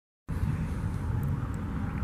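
Harley-Davidson Sportster 883's air-cooled V-twin idling through aftermarket Rinehart exhaust: a steady low rumble.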